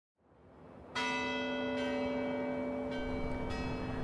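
A large tower bell struck about a second in, its deep tone ringing on steadily, with further strikes adding higher ringing notes later on.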